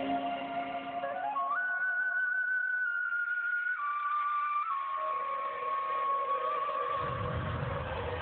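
Side-blown flute playing a slow melody of long held notes, each stepping lower in pitch, over a soft accompaniment that fades out in the first second or two. A low rumble comes in near the end.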